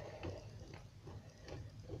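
Faint, scattered soft ticks and taps from a marker tip being pressed and drawn on slime, over a low steady hum.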